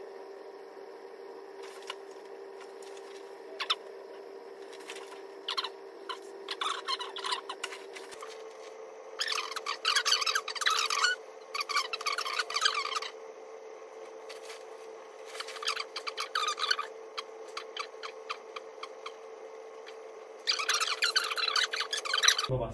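Bouts of squeaky rustling from a hospital bed, its mattress and sheets, as a leg is bent and rotated through passive stretches. The bouts come in clusters of one to two seconds. A steady hum runs underneath and steps up in pitch about eight seconds in.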